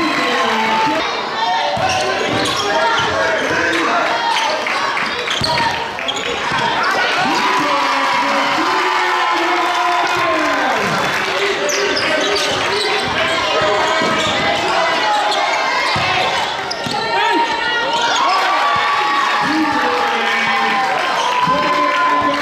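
A basketball being dribbled on a hardwood gym floor during play, with players' and spectators' voices throughout.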